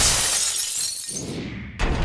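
Glass-shattering sound effect: a loud sudden crash that fades over about a second and a half, followed by a second sudden hit near the end.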